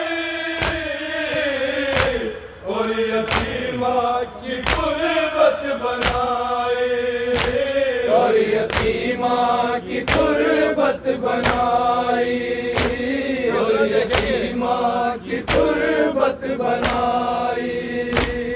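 A group of men chanting an Urdu noha (Muharram mourning lament) together, with hands beating on chests in matam as a steady beat about every 0.7 seconds.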